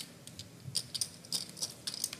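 Poker chips clicking together as they are handled at the table: a string of light, separate clicks, several a second.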